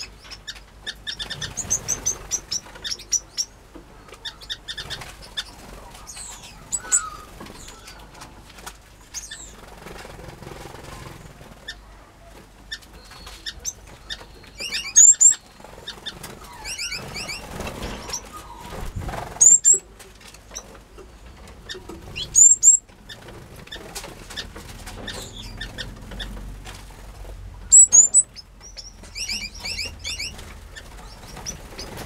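Small finches and canaries in a mixed aviary chirping, with wings fluttering as birds flit between perches. Four loud, high, rapid call phrases stand out in the second half.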